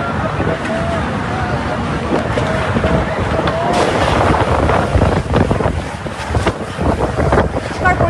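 Storm wind gusting hard against the microphone, rising and falling in loudness, with a voice calling out in drawn-out cries over it during the first half.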